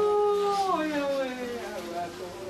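A woman's voice wailing in mourning: one long, loud, held cry that slides down in pitch about three-quarters of a second in, with other voices murmuring around it.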